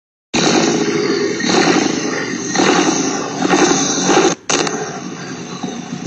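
Car engine and exhaust running as the car reverses slowly up a driveway, heard through a security camera's microphone: a loud, rough, muffled sound that swells about once a second, with a brief dropout about four seconds in.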